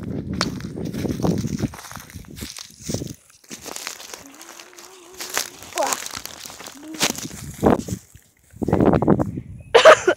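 Footsteps and the rustle and crunch of dry hay and grass, in uneven bursts, heaviest in the first second or two and again near the end.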